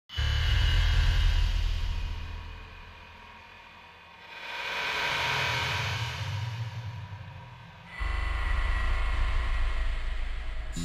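Intro music and sound design for a channel logo animation: a low bass hit at the start that slowly fades, a whoosh swelling in about four seconds in, and a second low hit about eight seconds in, over faint sustained tones.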